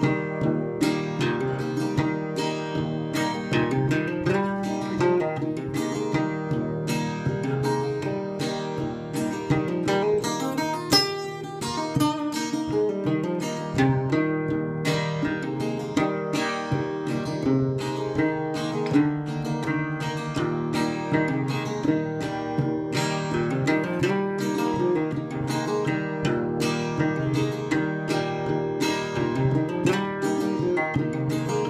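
Acoustic parlor guitar in open D tuning, fingerpicked with a glass slide: a steady run of plucked notes with gliding slide pitches.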